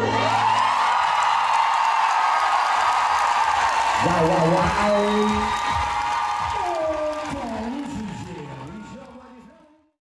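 Audience cheering and applauding, with a man's voice from about four seconds in; it all fades out near the end.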